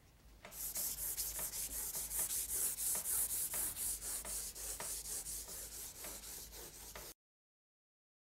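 Stick of soft vine charcoal rubbed on its side across drawing paper in repeated back-and-forth strokes, about three a second, a scratchy hiss. It cuts off suddenly near the end.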